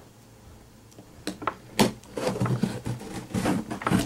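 Cardboard box being cut open with a knife: a run of scrapes, clicks and knocks on the cardboard and packing tape, starting about a second in and getting busier toward the end.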